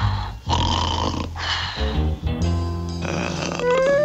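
Cartoon snoring from a sleeping character: three long raspy snores over soft background music. Near the end a single musical tone glides up and then back down.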